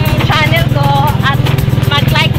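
A small motorcycle engine running steadily with a fast, even beat, with singing over it.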